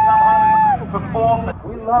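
A race announcer's voice over loudspeakers, holding one long drawn-out call that rises, holds for about a second and drops, over the low running of race UTV engines.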